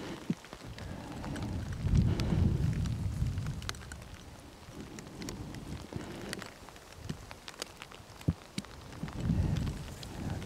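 Wind buffeting the microphone in low rumbling gusts, strongest about two seconds in and again near the end, with scattered faint ticks and taps throughout.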